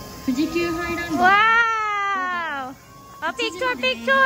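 A long drawn-out vocal cry lasting about a second and a half, rising and then sliding down in pitch, over faint background music; short choppy voice sounds follow near the end.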